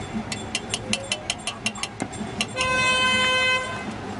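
A spoon clinks against a small metal coffee pot in a quick run of light ticks. Near the end a vehicle horn sounds once, steadily for about a second, and cuts off suddenly.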